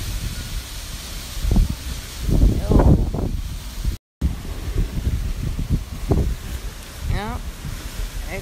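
Gusty wind buffeting the phone's microphone in low rumbling gusts, strongest a couple of seconds in. The sound drops out for a moment about halfway through.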